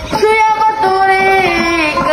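A high voice singing a Pashto tappa in long held notes that slide between pitches, accompanied by a plucked long-necked lute.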